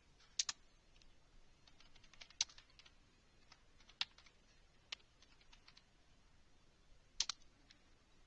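Computer keyboard being typed on in short, irregular runs of faint keystrokes, with about five sharper, louder clicks standing out among them.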